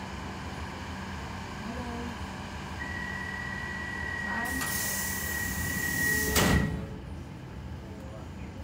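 C14 Stockholm metro car running in a tunnel with a steady rumble. A high steady whine comes in about three seconds in, and a loud rush of hissing noise follows a second and a half later, ending with a sharp thump about six and a half seconds in.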